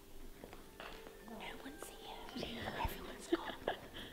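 Faint, low voices in a quiet room, with a few light knocks and clicks.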